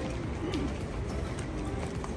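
City street noise with a short, low pigeon coo about half a second in.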